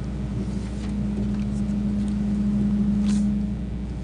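A steady low hum held at one pitch, swelling slightly and then stopping about three and a half seconds in, over a constant deeper buzz.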